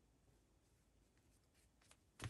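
Near silence, with faint, brief rustles of needle and thread being drawn through fabric in hand stitching near the end.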